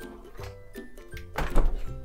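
A refrigerator door closing with a thump about one and a half seconds in, over background music.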